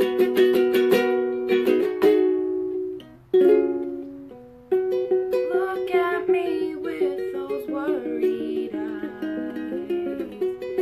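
Ukulele strummed in quick chords, then a single chord left to ring and fade about three seconds in. Strumming picks up again a second later under a woman's singing voice.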